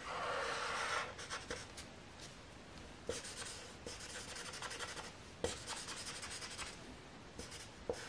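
Black felt-tip marker scratching across paper in quick shading strokes, in three spells with short pauses, with a sharp tick now and then as the tip touches down.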